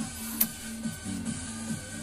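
Background music with a repeating low note pattern, and a single sharp click about half a second in.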